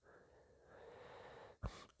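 Near silence, with a faint hiss in the middle and a brief soft breath near the end, taken just before speaking.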